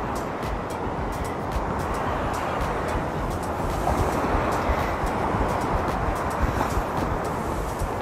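Steady rush of ocean surf breaking on a rocky beach, with background music playing underneath.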